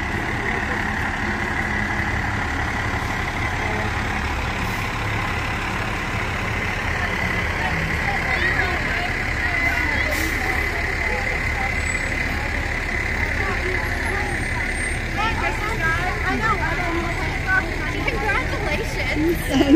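Fire truck engine running steadily as the truck drives slowly past, with people talking around it, the voices growing more frequent in the second half.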